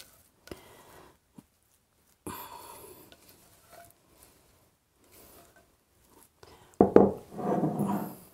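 Thick cornbread batter scraped out of a glass mixing bowl into a cast-iron skillet: a few soft scrapes and plops, then a louder stretch of spatula scraping and smearing in the pan near the end.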